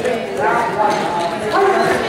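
Voices of several people talking and calling out in a large gym hall, with some light knocking underneath.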